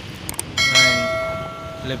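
Two quick clicks, then a bell chime that rings out and slowly fades. It is the sound effect of an on-screen YouTube subscribe-button animation with its notification bell.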